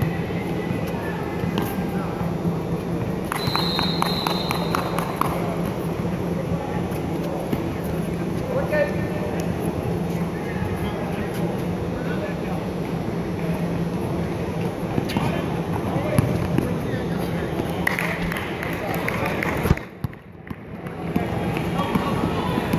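Gym sound of a youth basketball game: indistinct voices and shouts from players and spectators, with scattered ball bounces and footfalls over a steady hum. A brief high tone sounds a few seconds in, and the sound drops away sharply for about a second near the end.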